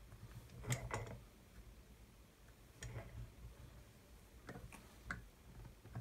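Faint, scattered clicks and taps of thin wooden strips being handled and set against a template held in a bench vise. The loudest cluster comes about a second in, with another near the middle and a few more near the end.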